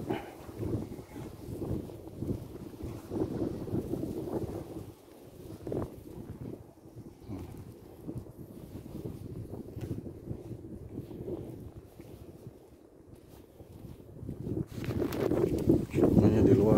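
Wind buffeting the phone's microphone in uneven gusts, a low rumble that is strongest in the first few seconds and dies down in the second half before picking up again near the end.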